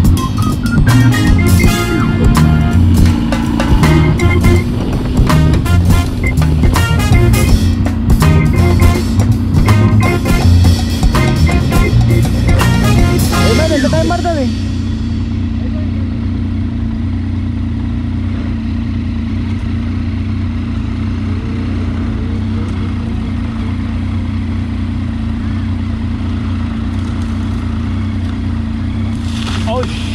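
Background music with drums for roughly the first half, stopping about fourteen seconds in. After that, a motorcycle engine running steadily with wind and road noise from a camera on the bike.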